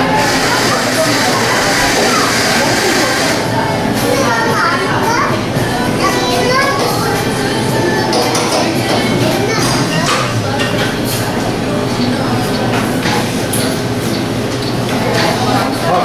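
Background chatter of several people talking at once in a crowded shop, a steady hubbub with no single voice standing out.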